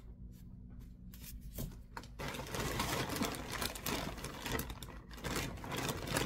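Rustling and crinkling from yarn being handled and rummaged for: a few light handling clicks at first, then dense, continuous rustling from about two seconds in.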